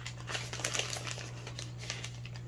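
Thin plastic packaging crinkling as a plastic toolkit pouch is handled, a quick run of small crackles that thins out toward the end.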